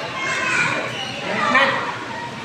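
Chatter of voices, among them a child's high voice, with no other distinct sound.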